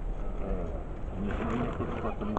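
Indistinct background voices over a low, steady rumble, with a brief burst of louder noise in the second half.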